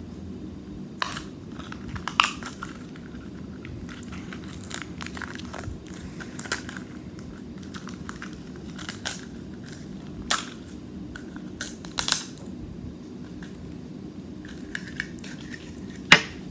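Plastic Mini Brands capsule ball and small toy packaging being handled and opened: scattered sharp clicks and crinkles every second or two, over a steady low hum.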